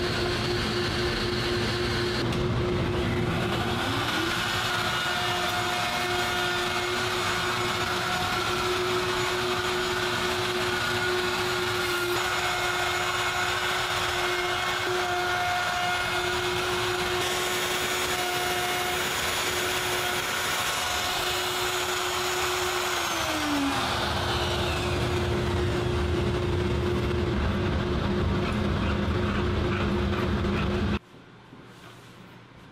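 An electric power tool's motor running steadily with a whine. The pitch climbs a few seconds in and sinks again about two-thirds of the way through, like the motor speeding up and slowing down.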